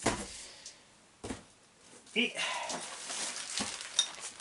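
Cardboard shipping box and its packing being handled: a single knock about a second in, then rustling, ending in a sharp click.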